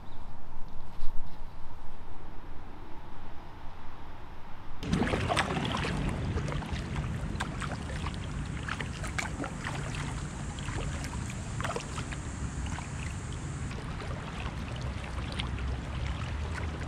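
Paddling on a river: about five seconds in, the sound changes abruptly to paddle strokes dipping and dripping water, with small splashes and knocks against a low rumble, as a small paddle boat moves along.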